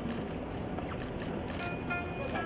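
Steady outdoor background noise with no distinct event, and faint distant voices near the end.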